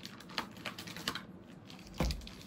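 Clear plastic packaging bag crinkling in the hands around plastic parts, a scatter of light, irregular clicks and crackles.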